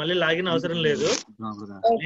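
Only speech: a person talking, with a brief pause about halfway through.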